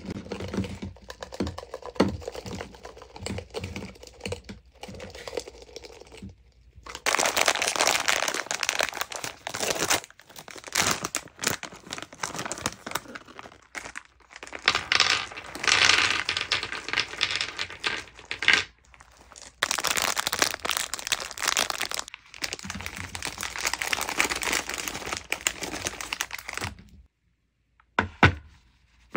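Soft sugar-coated gummy candies tipped from a plastic jar onto a wooden platter, landing with a series of soft knocks. Then, from about seven seconds in, a plastic candy bag crinkles loudly in long stretches, with short pauses, as chocolate candies are poured from it onto the tray.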